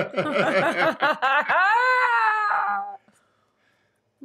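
A person laughing in quick bursts, running into one long drawn-out vocal note that rises, holds and breaks off about three seconds in.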